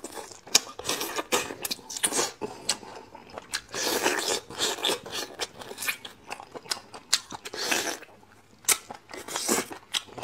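Marrow being sucked and slurped out of a hollow braised bone, close to the mouth. There are several longer slurps and many irregular wet mouth clicks and smacks in between as it is chewed.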